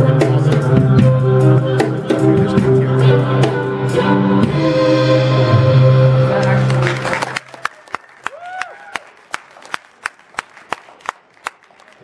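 A live acoustic trio of violin, upright bass and drum kit playing the held final notes of an instrumental piece, stopping together sharply about seven seconds in. Then come sparse, separate handclaps from a small audience.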